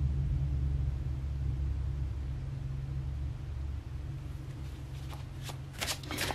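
A steady low background hum that eases a little after the middle. In the last second come a few faint rustles and clicks of tarot cards being handled.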